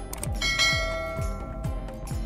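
A bell-like chime struck once about half a second in, ringing out for about a second, over light background music with a steady beat. It is the sound effect marking the reveal of the correct quiz answer.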